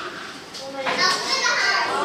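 Overlapping chatter of many young children talking at once in a classroom, getting louder about a second in.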